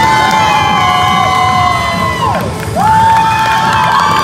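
Crowd cheering with long, high-pitched screams: one held scream falls away about halfway through, and a second rises soon after and is held.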